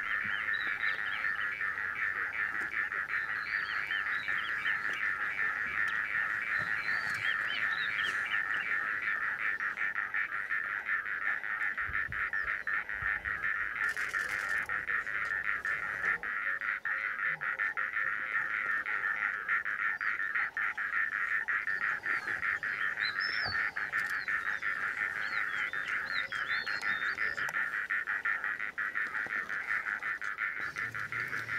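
Steady, dense chorus of calling insects, with bird calls chirping over it in clusters in the first several seconds and again in the last few.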